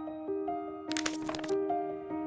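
Soft film score of held, gently stepping notes, with a short burst of paper crackling about a second in as a small paper packet of herbal tea is torn open.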